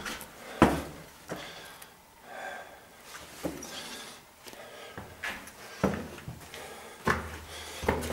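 Footsteps climbing worn stone stairs: a handful of irregular thumps and scuffs spaced unevenly, with rustle from a handheld camera between them.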